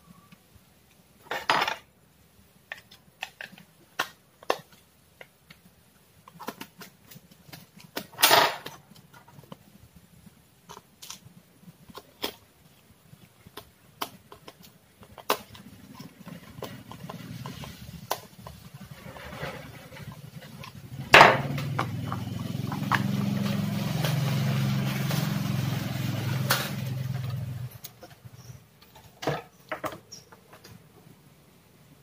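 Plastic clicks and knocks as a digital multimeter's case is handled, a 9-volt battery fitted and the back cover screwed shut. Sharp knocks come about a second and a half in and, louder, about eight seconds in. From about sixteen seconds a steady rumbling noise builds, loudest from about 21 to 28 seconds, then stops.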